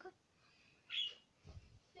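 A pet budgerigar gives one short, high chirp about a second in. A soft low thump follows about half a second later.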